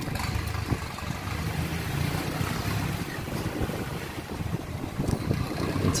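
Motor scooter engine running at low speed, a steady low hum with wind noise on the microphone.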